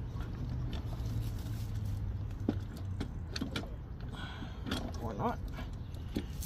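Scattered light clicks and knocks as the loosened cylinder head of a Fiat Abarth engine is worked by hand to lift it off the block, over a steady low hum.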